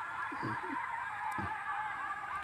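A steady background chorus of many overlapping, wavering animal calls.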